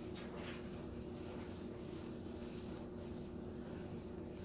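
Faint scratchy strokes of a small paintbrush and a foam roller working paint over a grooved siding panel, over a steady low hum.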